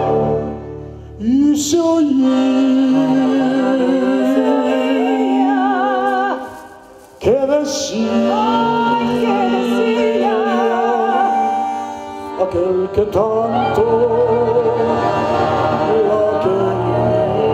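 Live folk ensemble: a voice singing long held, wordless notes with vibrato over sustained accordion and cello. The music drops away briefly twice, about a second in and about seven seconds in.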